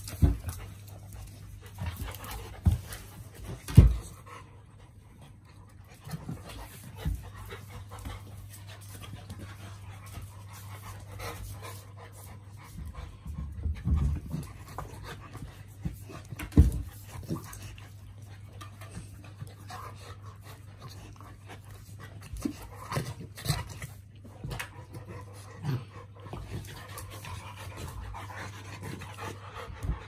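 A chow chow puppy and a St Bernard puppy play-fighting: panting and scuffling, with scattered sharp thumps, the loudest about four seconds in and again just before the seventeen-second mark.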